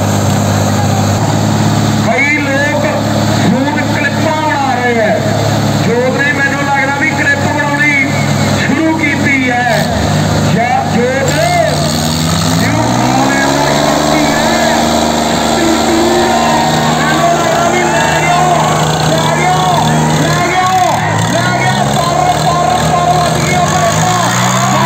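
Diesel tractor engines running hard under load in a tractor tug-of-war, their pitch rising about twelve seconds in and again near the end as they are revved up. People shout over the engines.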